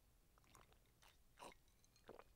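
Faint gulps and swallows of a person drinking wine from a glass: a few soft short sounds, the clearest about one and a half seconds in.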